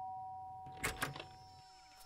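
A two-tone ding-dong doorbell chime dying away, its two notes ringing on and slowly fading. A couple of short clicks come about a second in.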